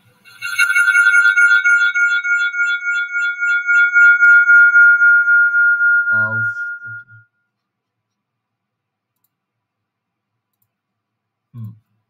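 A loud, high-pitched steady electronic tone with a fast pulsing wobble, lasting about seven seconds and then cutting off. A short low sound comes about six seconds in and another near the end.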